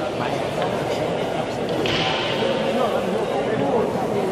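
Indistinct chatter of voices in a hall, with a short hissing noise about two seconds in.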